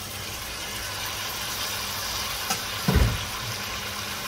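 Raw chicken pieces sizzling in hot oil and fried onions in a pot, a steady hiss over a low hum. A click and then a heavy thump about three seconds in as more chicken drops from the colander into the pot.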